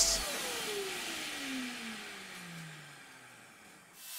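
Plunge router switched off and winding down, its motor pitch falling steadily and fading over about three and a half seconds.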